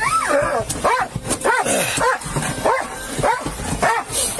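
A dog whining in a string of about seven cries, each rising then falling in pitch, roughly one every half second.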